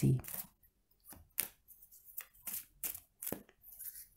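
Tarot cards being handled and drawn from the deck: a run of short, crisp card snaps about three a second.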